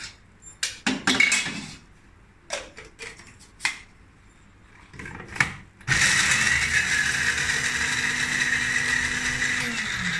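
A few knocks and clatters of kitchen utensils, then about six seconds in an electric blender motor starts and runs steadily, grinding roasted beans to powder; its pitch drops slightly near the end.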